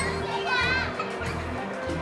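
Background music with a steady low beat, with children's voices calling and playing.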